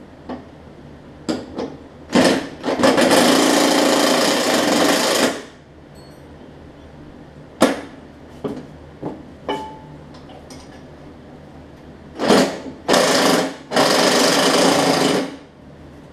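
Cordless impact driver hammering on the bolts of a mower deck's blade brakes in two bursts of about three seconds, undoing them so the brakes can come off. Short metallic clicks of a hand wrench on the bracket come between the bursts.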